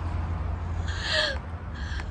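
A person's short, breathy laugh about a second in, with a brief falling pitch, and a softer breath near the end, over a steady low rumble.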